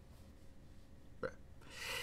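Quiet room tone. A man says a single short word about a second in, then draws a breath near the end.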